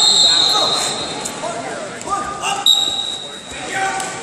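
Referee's whistle blown twice over hall chatter: a blast of about a second at the start and a shorter one near three seconds in, the second as the bout's clock starts running.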